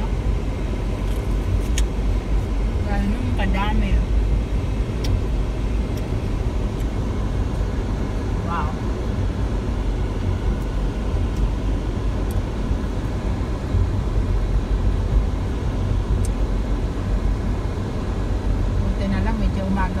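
Steady low rumble of a car's tyres and engine heard from inside the cabin while driving, with a few brief, quiet voices.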